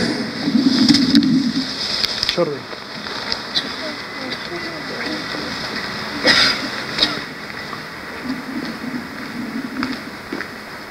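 Steady outdoor background noise on a parade ground, with a single shouted command about two seconds in and a short burst of noise about six seconds in.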